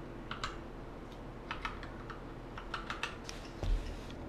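Computer keyboard keys typed in short, irregular clicks, with a soft low thump near the end.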